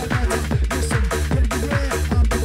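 Fast electronic dance music from a recorded club DJ mix: a driving four-to-the-floor kick drum, each kick a quick downward pitch slide, with rapid, evenly spaced beats under sustained synth chords.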